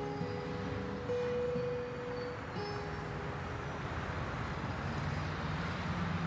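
Steady hum of busy city road traffic. A few faint held music notes linger in the first half.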